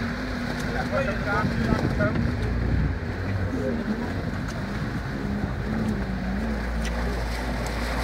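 4x4 engine running steadily as the vehicle drives through a river ford, with water splashing and rushing around it.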